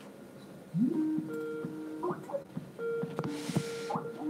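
A video-call app's ringing tone: a short electronic melody of held notes that opens with an upward slide and repeats about every three and a half seconds.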